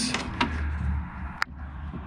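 Faint handling noise inside a van door cavity as the door lock's electrical plug is worked into place, with one sharp click about a second and a half in.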